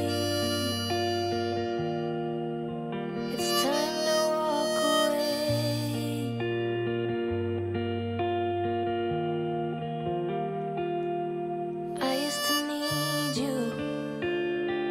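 Harmonica playing the slow melody of a song in phrases with vibrato, the brightest about four seconds in and again near the end, over a backing track of held chords and a bass line.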